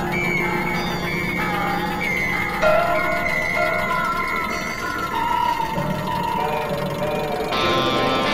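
Experimental electronic music of several overlapping held tones that step from pitch to pitch over a steady low drone. A brighter, denser layer of tones comes in near the end.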